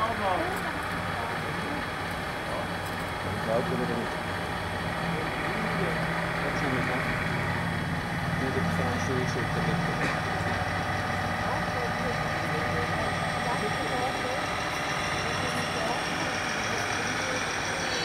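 Radio-controlled model truck's sound module playing a diesel truck engine idling, a steady low hum throughout.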